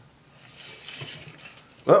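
Faint, soft plastic rustle of a Lomo UPB-1 developing spiral being turned by its spindle as Super 8 film feeds into its groove. Near the end a man's loud, surprised "oh" breaks in as the film pops out of the groove.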